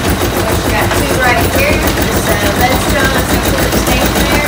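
Belt-driven gristmill machinery running: spinning pulleys, flat drive belts and a corn-grinding mill, making a fast, even clatter over a low rumble.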